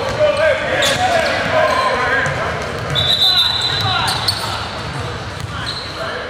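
Gym sounds of a half-court basketball game: a basketball bouncing on the hardwood floor and scattered knocks, under the chatter of players and spectators echoing in a large hall. A high thin squeal lasts about a second, starting about three seconds in.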